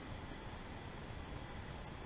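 Faint, steady background hiss of room tone with no distinct event.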